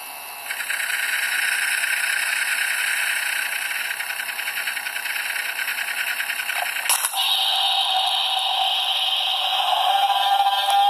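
A continuous rattling hiss, a sound effect of the toy soldiers' gunfire. About seven seconds in it changes to a higher, steadier hiss over a steady hum.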